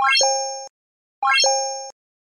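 Synthesized button-click sound effect played twice, about a second and a quarter apart: each is a quick rising run of notes ending in a bell-like ding that fades out.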